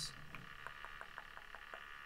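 A faint run of light, evenly spaced clicks, about six a second.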